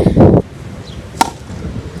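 A Moon Ball thrown down hard onto asphalt, striking the ground once with a single sharp smack about a second in as it bounces up high.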